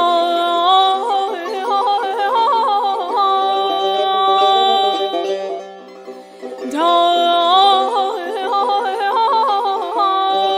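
A woman singing Persian classical avaz in Bayat-e Esfahan: two long sung phrases, each opening with a rising glide and filled with tahrir, the rapid yodel-like trills of the voice. A tar plays along with the voice.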